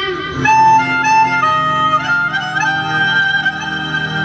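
Instrumental interlude in a Rajasthani devotional bhajan: a melody instrument plays a run of steady held notes stepping up and down over a low sustained accompaniment, between the singer's lines.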